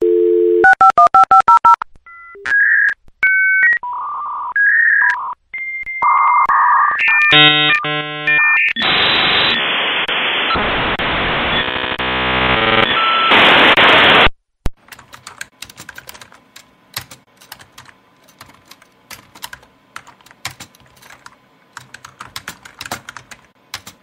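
Dial-up modem connecting: a dial tone, a quick run of touch-tone dialing beeps, then the modem's handshake tones and a loud hissing screech that cuts off suddenly about 14 seconds in. Faint crackling clicks follow.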